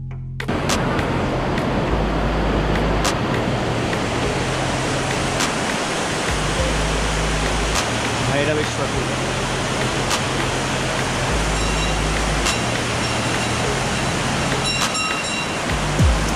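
Rushing water of a swollen stream, a loud steady noise of water that comes in about half a second in, with background music's low notes changing slowly beneath it.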